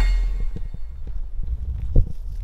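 Footsteps through forest leaf litter: short, irregular crunches under a steady low rumble, ending in a sharp crack just before the end.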